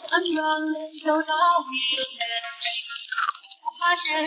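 Background music with a sung melody moving in held, stepping notes, and a short burst of hissy noise a little before three seconds in.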